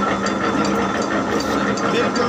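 Electric flip-flop die-cutting press machine running: a steady motor hum with rapid, regular clicking from its gear mechanism, about four clicks a second.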